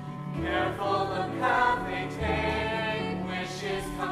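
Several voices singing a musical-theatre song together over instrumental accompaniment, with held low bass notes underneath.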